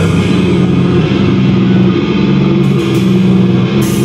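A metal band playing live at high volume: heavily distorted guitars and bass in a fast, chugging low riff, with drums and cymbals.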